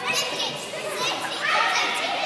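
Several children's voices at play, overlapping high-pitched calls and chatter from kids moving about together.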